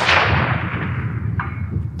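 Boom of a sniper rifle shot rolling away across the open range and dying out over about a second and a half. About 1.4 seconds in comes a faint metallic ping with a short ring: the bullet striking a gong target 400 metres downrange.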